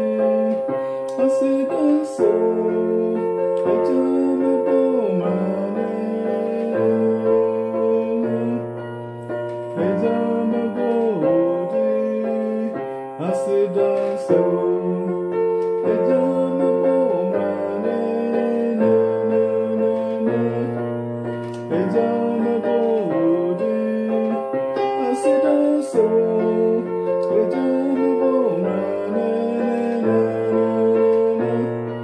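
Yamaha portable electronic keyboard played in a piano voice with both hands: left-hand bass notes under right-hand chords in a steady rhythm, working through a simple gospel chord progression with chords changing every second or two.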